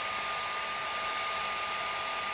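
Panasonic EH-NA45 hair dryer running steadily on its lower fan speed with low heat: an even rush of air with a steady whine over it.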